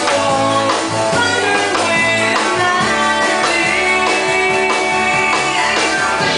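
Live band playing a slow, sad country song: electric guitars with bass and a drum kit, a long note held through the middle.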